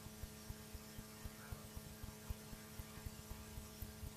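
Faint steady electrical mains hum with background hiss from the recording, with a scatter of soft low clicks.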